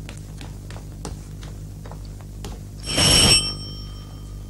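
An electric doorbell rings once, briefly, about three seconds in.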